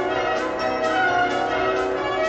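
A peal of church bells ringing, many bells struck one after another in quick succession, about three strikes a second, their tones overlapping as they ring on.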